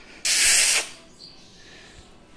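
A single loud hiss lasting just over half a second, starting about a quarter second in and stopping abruptly.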